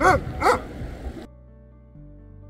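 A dog yelping and whining: two short high calls that rise and fall. About a second in, soft background music takes over.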